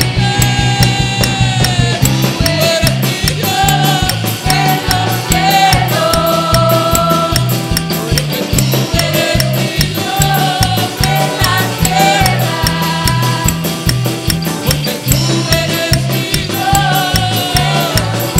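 Live band playing an upbeat worship song: drum kit with a busy, fast cymbal beat, a pulsing electric bass line, keyboard and electric guitar.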